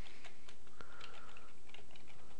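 Computer keyboard being typed on: an irregular run of quick key clicks as a command is entered, over a steady background hiss.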